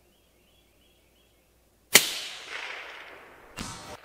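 A single suppressed rifle shot fired from inside a wooden shooting house: a sharp crack about two seconds in, then a long tail fading over more than a second. A short burst of noise follows near the end.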